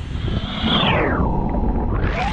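Brushless electric motor of an RC basher truck whining, its pitch dropping steeply about half a second in, holding lower, then climbing again at the end, over a rough low rumble.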